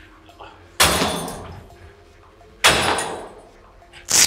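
Cable machine's weight stack clanking twice: two loud metal clanks about two seconds apart, each ringing away over about a second.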